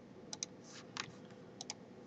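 A handful of faint computer mouse clicks spread over two seconds, some of them in quick pairs, as files are selected and a right-click menu is opened.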